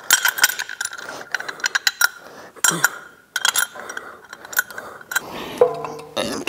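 Irregular metallic clicks and clinks as bolts are threaded in by hand to fasten a billet aluminum motor-mount adapter to a Gen 5 LT1 engine block.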